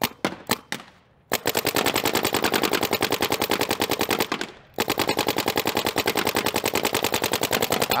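Paintball marker firing: four single shots about a quarter second apart, then a fast, even string of rapid shots starting just over a second in. It pauses briefly near the middle, then another rapid string runs on.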